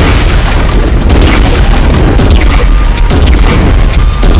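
Loud, continuous deep booming of explosion sound effects, with repeated sharp hits, laid over dramatic music.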